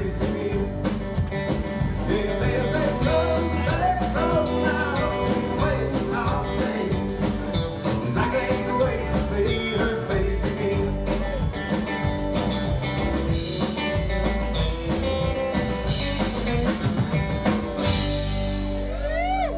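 Live country-rock band playing: electric and acoustic guitars, electric bass and a drum kit, over a steady drum beat.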